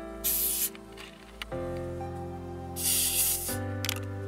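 Carbonated soft-drink bottles hissing as their screw caps are twisted open and the gas escapes: a short hiss about a quarter of a second in, and a longer one near three seconds in.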